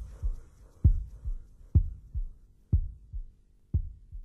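A heartbeat sound effect on a death metal album: paired low thumps, a hard beat and then a softer one, coming a little under once a second. The band's music dies away in the first half second.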